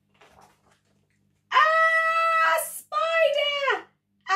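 A woman's playful, high-pitched drawn-out scream, 'Aaah!', then a second shrieked cry that falls in pitch at its end, acting out the family's fright at the spider in a read-aloud.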